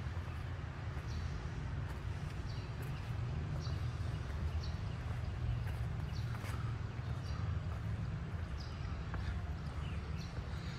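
Outdoor city ambience: a steady low rumble, with a bird's short high chirps repeating roughly once a second.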